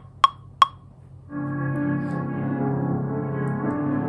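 Two clicks of a metronome count-in, then about a second in a dark ambient sample starts: layered, sustained tones from the original starter loop run through Output Portal's Hypnotised granular preset, playing steadily.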